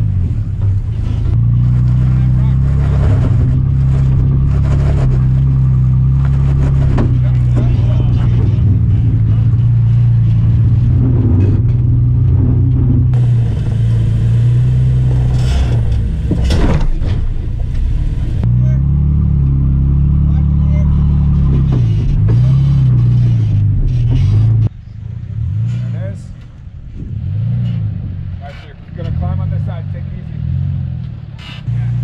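Off-road vehicle's engine running at low revs while rock crawling, heard close to the tyre, with revs rising and falling and occasional knocks and scrapes as the tyres climb over boulders. Near the end it drops to a quieter engine with revs rising and falling.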